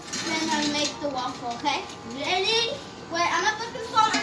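Voices of young children and a woman talking, with no clear words.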